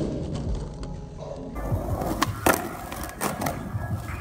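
Skateboard wheels rolling on rough asphalt, with sharp clacks of the board: one right at the start and two more between two and three seconds in. Music plays underneath.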